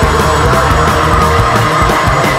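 Loud heavy metal: distorted electric guitars over steady, fast drumming with cymbals.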